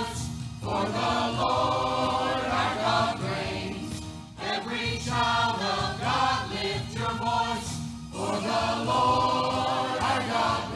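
Church choir singing, the sung phrases breaking off briefly about half a second, four seconds and eight seconds in.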